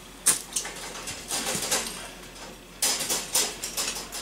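Clinks and rattles of wire rabbit cages and a metal feed bowl during feeding: a sharp click about a quarter second in, lighter rustling in the middle, and a cluster of clatters near three seconds.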